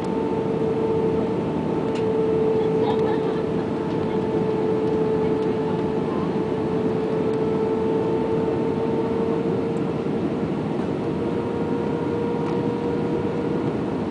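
Airbus A320 cabin noise heard from a window seat over the wing: a steady roar of engines and rushing air, with a steady hum and a fainter higher tone running through it.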